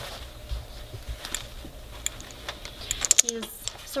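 Light, irregular clicks and rustles of a puppy moving about at the entrance of a wire crate, nosing into its bedding, with a quick cluster of sharp clicks about three seconds in.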